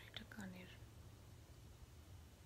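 A woman's brief, faint murmur with a falling pitch, about half a second long, near the start. The rest is near silence with a low steady room hum.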